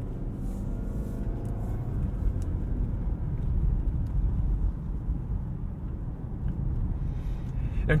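Inside the cabin of a 2024 Nissan Altima SL AWD on the move at low speed: a steady low rumble of tyre and road noise, with the engine running underneath. The driver puts most of this car's road noise down to its 19-inch tyres rather than to a noisy cabin.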